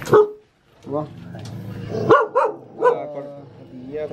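Red H'Mông bobtail puppy giving a few short, alert barks, the wary reaction to strangers that is typical of the native dog.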